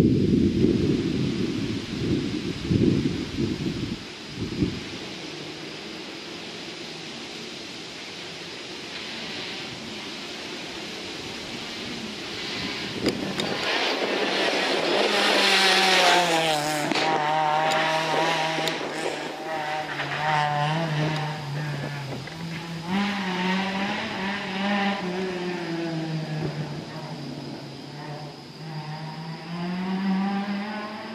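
A rally car's engine approaching at full throttle and passing close, loudest in the middle, then carrying on up the road with its pitch repeatedly rising and dropping through gear changes and lifts. A low wind rumble on the microphone fills the first few seconds.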